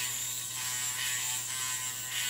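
Finishing Touch Flawless battery facial hair remover running with a steady small-motor buzz as its spinning head is moved over the skin of the cheek.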